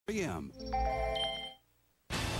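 A voice says one short word. Then a short electronic chime of several held tones rings for about a second before stopping. This is the closing sound-logo sting of a TV commercial.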